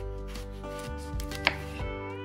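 Chef's knife slicing a raw apple into thin slices, crisp cutting strokes with one sharp tap of the blade on the wooden cutting board about one and a half seconds in. Soft guitar music plays underneath.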